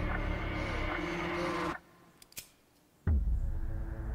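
Horror-trailer score: a dense sustained drone that cuts out abruptly a little before halfway, two sharp clicks in the hush, then a loud low boom hit about three seconds in as the drone returns.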